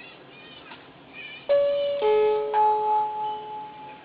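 Electronic shop-door entry chime ringing as someone comes in: three ringing notes about half a second apart, starting about a second and a half in, each fading out slowly.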